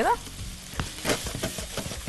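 Chicken livers sizzling as they fry in a hot pan, with a few light clicks and scrapes as they are stirred.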